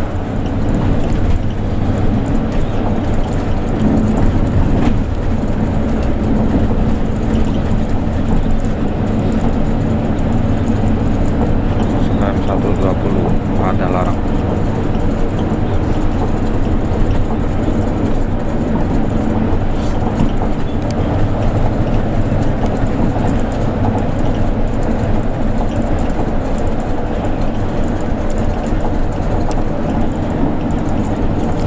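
Steady drone of a Hino RK coach's engine and tyres at highway speed, heard from inside the cabin.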